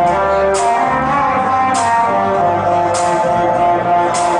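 Live music at a loud, steady level: pitched instrumental playing, with a guitar audible, over a slow beat with a sharp drum hit about every second and a quarter.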